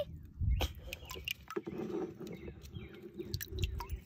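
A ladle knocking and scraping against a plastic bucket and dipping into water, a scatter of light clicks and small splashes.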